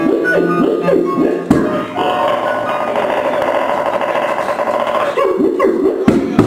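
Piano music plays for the first second and a half and then cuts off. A held, wavering sound fills the middle few seconds, and a beatboxer's vocal beat begins near the end.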